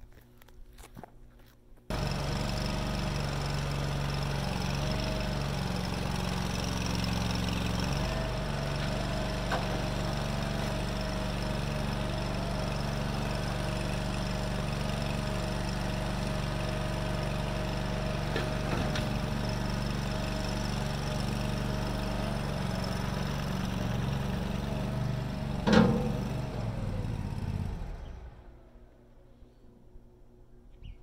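Engine of a Vermeer CTX50 mini skid steer running steadily, cutting in abruptly about two seconds in. Near the end there is a single sharp clunk, then the engine winds down and stops.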